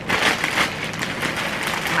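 Plastic packaging crinkling and rustling as a shipping mailer bag is opened and handled, a dense crackle throughout.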